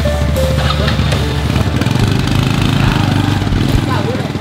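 Background music, with a small motorcycle engine idling underneath it.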